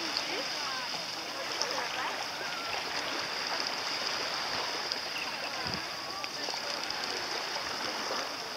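Steady wash of small waves at the water's edge, with faint distant voices.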